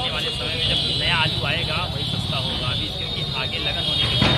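Mostly speech: voices talking over a steady background noise.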